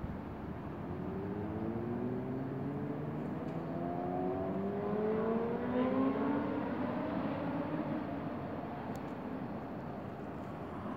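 A car engine accelerating out of sight, its pitch rising steadily for several seconds. It is loudest about six seconds in, then eases off.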